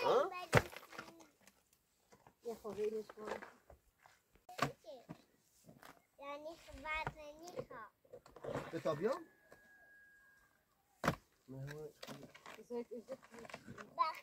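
People talking, a child's voice among them, in untranscribed speech. Three sharp single knocks fall between the stretches of talk: a long-handled shovel striking stony ground.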